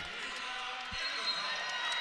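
Indoor volleyball arena crowd murmur, with one dull thump of a volleyball about a second in.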